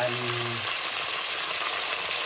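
Chunks of meat searing in hot oil in a deep pot, a steady sizzle throughout.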